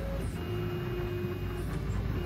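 Dremel 3D printer running a print: the print head's motors give a thin steady whine that starts about half a second in, breaks off a second later and resumes near the end, over a steady low hum.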